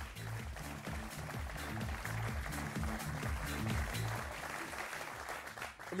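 Studio audience applauding over a music sting with a moving bass line.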